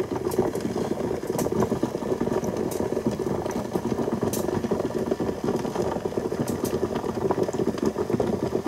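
Hot water in a large stockpot on a stove that has just been turned off, giving a steady crackling, bubbling noise with a few sharp clicks.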